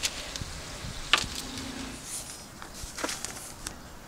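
Footsteps and rustling foliage as someone walks through a garden, heard as a few scattered sharp crunches over a quiet outdoor hiss, with a brief low hum about a third of the way through.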